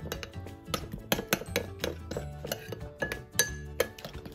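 A metal utensil clinking and scraping against a glass bowl while stirring chicken in an oily marinade: a quick, irregular run of sharp clinks, over background music.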